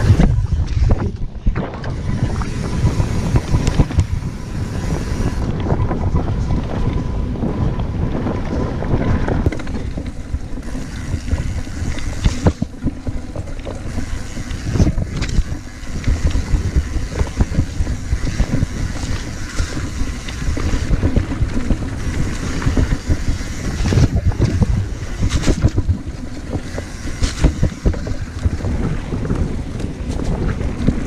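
Wind buffeting the microphone of a mountain bike's point-of-view camera at speed, over the rumble of tyres on a rough dirt track. Occasional sharp clatters come from the bike jolting over bumps.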